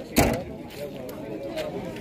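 Faint voices of people talking in the background, with one short thump just after the start.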